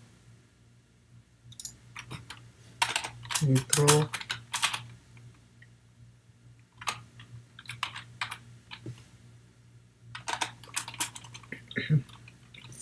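Typing on a computer keyboard: bursts of quick keystrokes about three to five seconds in and again near the end, with sparser clicks between.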